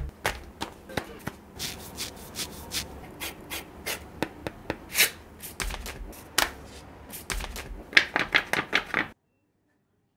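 Hands opening a cardboard mailer and handling a sheet of vinyl camera-skin film: cardboard and paper rubbing, with frequent short taps and clicks. There is a quick run of taps about eight seconds in, then the sound cuts off abruptly about a second before the end.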